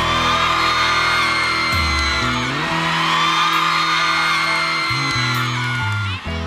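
Live band music with layered sustained chords, long held high notes that bend slowly, and a bass that moves to a new note about every three seconds.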